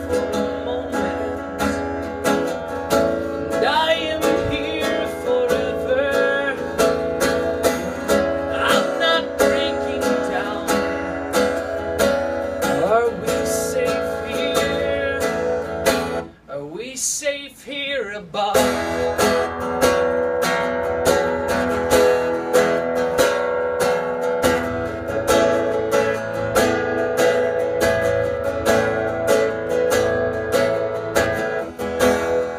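Acoustic guitar strummed in full, steady chords, briefly thinning out and dropping in level about two-thirds of the way through before the strumming picks up again.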